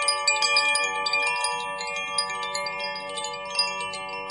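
Chimes ringing: many bell-like tones overlap and hang on, with fresh strikes several times a second.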